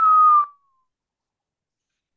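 A person whistling a single short note that jumps up and then slides slightly down in pitch, ending about half a second in.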